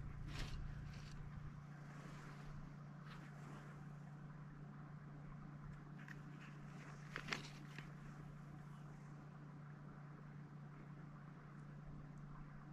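Quiet outdoor stillness with a steady low hum and a few faint small clicks and rustles of hands handling fishing line and an ice-fishing rod; the sharpest click comes about seven seconds in.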